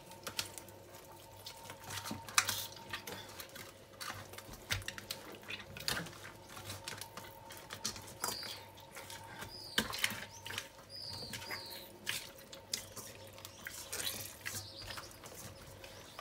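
Faint wet squelching and small clicks of bare hands kneading and squeezing whole salted tilapia in a stainless steel bowl, working the salt into the flesh. A few short high chirps come in the middle, over a faint steady hum.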